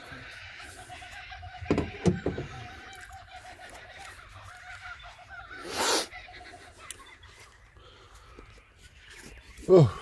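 Two dull knocks about two seconds in as a compressed-air rocket is handled in a hard plastic toolbox, then a short rustling burst around six seconds in.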